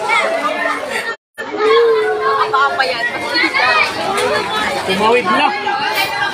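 Crowd of people talking and calling over one another in overlapping chatter. The sound cuts out completely for a moment just after a second in.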